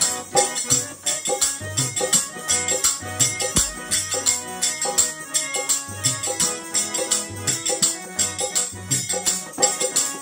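Harmonium playing an instrumental passage of held chords and melody over a steady beat of low hand-drum strokes and jingling percussion.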